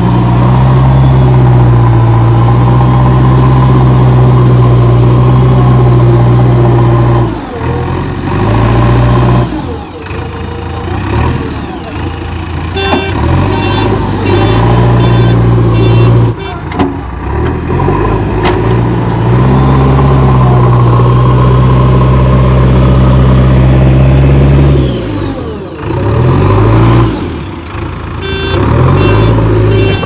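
Diesel engine of a JCB 3DX Xtra backhoe loader working hard as the front bucket pushes soil, held at high revs for several seconds at a time and dropping back between pushes. A run of rapid high beeps sounds twice, in the middle and near the end.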